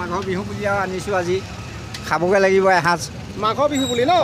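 A person talking over steady outdoor street noise.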